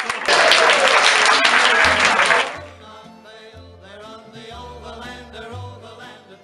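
An audience applauding, which cuts off sharply about two and a half seconds in. Quieter background music with a steady bass line follows.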